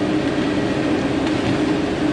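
Diesel engine of heavy logging equipment running at a steady speed, a continuous even drone.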